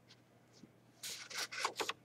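A sheet of paper rubbing and rustling close to the microphone in several quick scrapes during the second half, after about a second of near quiet.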